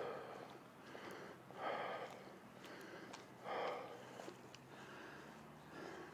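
A person breathing hard while jogging, four puffing breaths about two seconds apart, with a few faint ticks between them.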